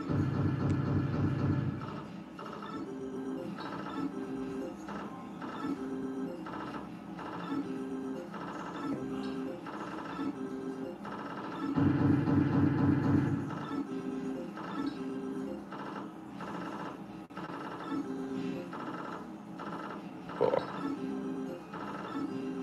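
Electronic game sounds from a Novoline Book of Ra Fixed slot machine during its jackpot-wheel feature. A short chiming tone pattern repeats about every two-thirds of a second, with two louder, fuller bursts: one at the start and one about twelve seconds in.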